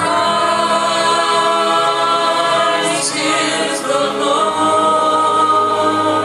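Small mixed group of men's and women's voices singing together in harmony into microphones, holding long chords.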